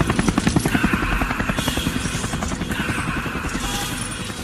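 Helicopter rotor chopping rapidly, about ten beats a second, fading out over the first couple of seconds, with music playing underneath.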